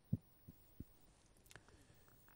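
Quiet room tone with three faint, short low thumps in the first second and a few soft clicks in the second half.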